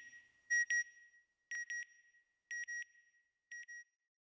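Electronic beep sound effect: short double beeps, a pair about once a second, each pair fainter than the last.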